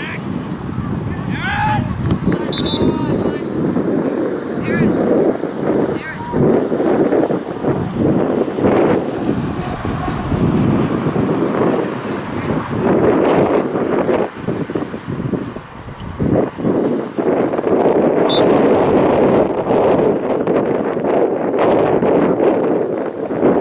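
Wind noise on the camera microphone, steady and fluctuating throughout, over indistinct distant shouts from players and spectators on an open soccer field.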